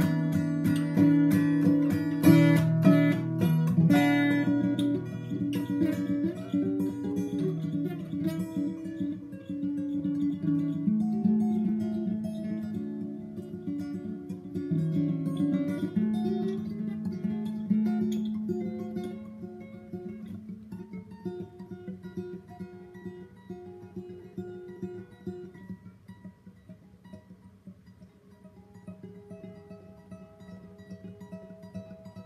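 Acoustic guitar played solo: strummed chords for the first several seconds, then softer picked notes that grow quieter toward the end, as the song winds down.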